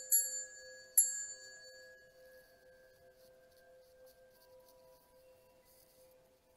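Koshi chimes rung: a bright, high tinkling strike at the start and another about a second in, each ringing and fading away over the next couple of seconds. A low steady tone sustains underneath.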